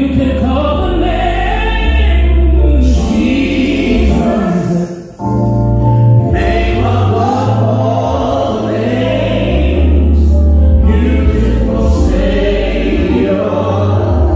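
Gospel music: a choir singing over sustained low chords, with a brief drop-out about five seconds in.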